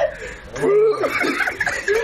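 People laughing in short bursts, loudest in the middle.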